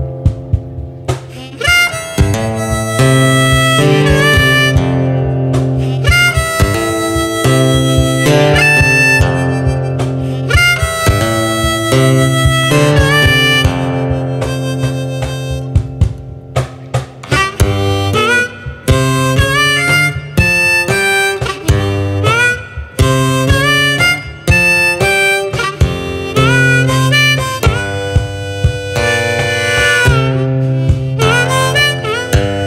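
Harmonica played from a neck rack over fingerstyle acoustic guitar, with bass notes picked on the guitar and sharp percussive knocks keeping the beat. The harmonica melody has notes that slide up into pitch.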